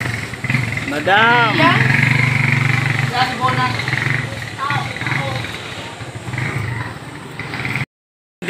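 A motor vehicle engine running steadily nearby, with people's voices around it; a drawn-out call rises and falls in pitch about a second in.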